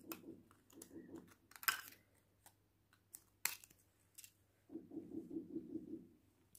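Scissors snipping a gelatin sheet into small pieces: a handful of separate, sharp snips, the loudest about two seconds and three and a half seconds in.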